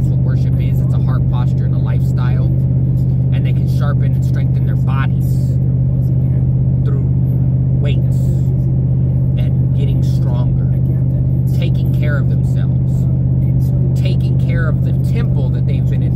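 Steady low drone of a vehicle's cabin at cruising speed, engine and road noise heard from inside, holding one pitch throughout. Faint fragments of a man's voice come and go over it.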